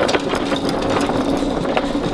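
Hand pallet jack carrying an empty wooden pallet, rolling over a concrete floor with a dense clatter and rattle, over a steady machine hum.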